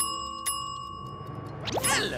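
Counter service bell struck twice, about half a second apart, its ring fading over the next second. Near the end a quick rising swoosh.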